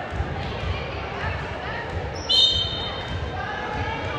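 A referee's whistle blows once, a high steady tone about half a second long, about two and a half seconds in, signalling the serve. Around it, dull thumps of a volleyball bounced on the hardwood gym floor and the chatter of the crowd echo in the hall.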